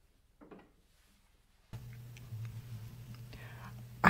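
Near silence, then a little under two seconds in a live microphone opens with a faint steady low hum and soft, whisper-like voice sounds close to it.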